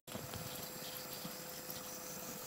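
Faint, steady whir of a battery-powered BENEXMART (Zemismart) smart blind motor driving a chained roller blind down as it closes, with a thin steady hum.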